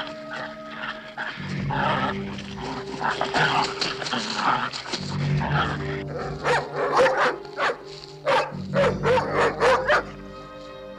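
A dog barking repeatedly, in quick sharp barks from about six seconds in, over background music.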